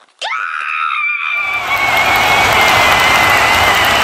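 A high, excited scream of celebration rises sharply at the start and holds its pitch. About a second in, loud crowd cheering and applause join it and keep building.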